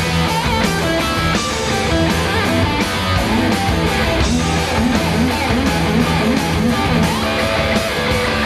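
Live hard-rock band playing an instrumental passage: distorted electric guitar and electric bass over drums, with wavering bent low notes through the second half.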